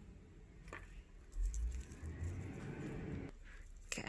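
Low rumble of a heavy truck driving past outside, swelling about a second in and dying away near the end.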